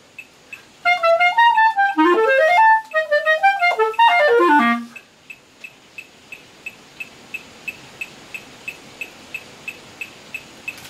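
Clarinet playing slow phrases of rising and falling triplet runs, the last run falling into the low register and stopping about five seconds in. A metronome then ticks on alone, about three clicks a second.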